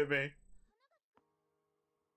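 A man's voice ending a drawn-out word, then near silence with one faint tick about a second in.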